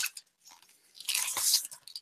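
A large paperbound book being pulled out of its cardboard box: a short click, then about a second of paper and cardboard scraping and rustling in the second half.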